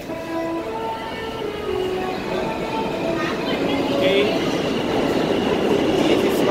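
New York City subway train pulling into the station: its electric motors whine in steady tones that shift pitch in steps, the rumble grows louder as it nears, and short wavering high squeals of the wheels or brakes come in from about three seconds in.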